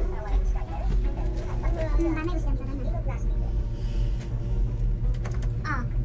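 Steady low rumble inside a moving cable-car gondola, with quiet talk among the passengers in the first couple of seconds and a brief voiced "ah" near the end.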